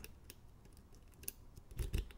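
Faint, scattered metallic ticks and scrapes of a steel medium hook pick probing the pin stack inside a Corbin Russwin pin-tumbler lock cylinder, with a slightly louder click near the end. The pick is pressing against a pin at the back with a really strong spring.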